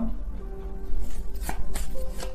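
Soft background music with a few sharp taps about a second and a half in, from tarot cards being handled on the table.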